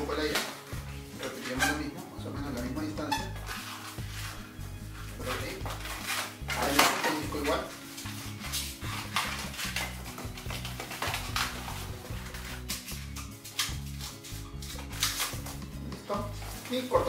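Latex modelling balloons squeaking and rubbing in a series of short bursts as they are twisted by hand, over background music.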